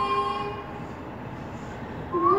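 A young woman's singing voice holding the last note of a phrase, which fades out about half a second in, followed by a short pause with faint background hiss before the next phrase.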